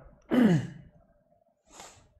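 A man sighs once, a short voiced exhalation falling in pitch, followed near the end by a brief soft hiss of breath.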